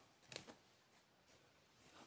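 Near silence, with faint rustling of a cross-stitch canvas being handled and stitched with a needle.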